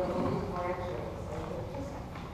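Indistinct speech: people talking across a room, the words not clear.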